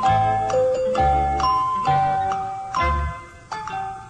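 Background music: a light melody of bell-like, mallet-struck notes with ringing tails over a steady low bass pulse.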